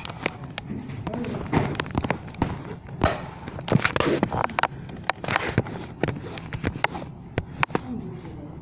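Indistinct voices in a room, with many scattered sharp clicks and knocks throughout.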